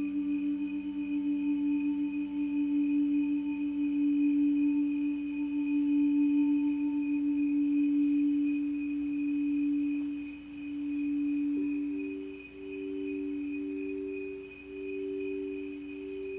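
Crystal singing bowls ringing in long, steady, overlapping tones. From about ten seconds in, the sound swells and fades in slow waves, and a higher bowl tone joins in.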